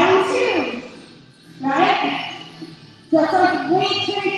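A woman's voice in short, loud phrases about every second and a half, each one trailing off.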